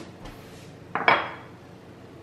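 A square ceramic plate set down on a hard countertop, making one sharp clink about a second in.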